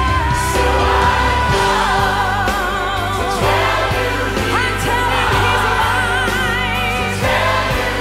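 Gospel song performed live by singers, choir and band. A lead vocal with wide vibrato sings over sustained low bass notes.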